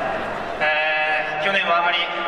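Speech only: a man's voice in Japanese holding one long, level drawn-out vowel for about a second, a hesitation filler, then the word "ne".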